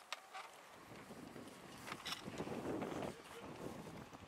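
A keepnet full of fish being lifted and emptied, with water running off the mesh and the netting rustling. The sound builds about a second in and eases near the end, with a few sharp clicks.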